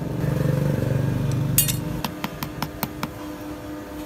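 Small metallic clicks while a thin metal pin is pushed through the wooden scales of a knife handle: one sharp click, then a quick run of about six clicks in about a second. A steady low hum runs underneath.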